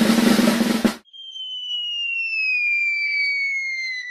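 Snare drum roll building in intensity and cutting off abruptly about a second in, followed by a long falling whistle that glides slowly down in pitch.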